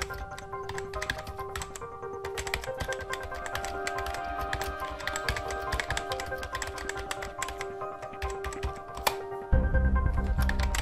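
Rapid, irregular clicking of computer keyboard typing over background music with steady held tones; a heavy bass comes in suddenly near the end.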